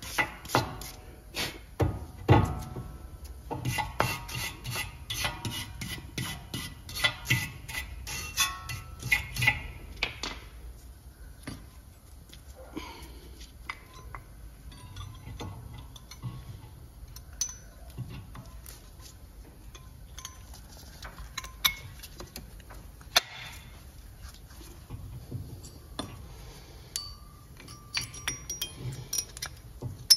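Steel wire brush scrubbing the brake caliper bracket in quick, repeated strokes for about the first ten seconds, then scattered metallic clicks and clinks as the brake pads and caliper parts are handled and fitted.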